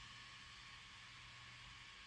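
Near silence: room tone, a steady faint hiss with a low hum.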